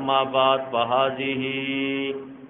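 A man's voice chanting in a drawn-out, melodic way, ending on one long held note for about the last second.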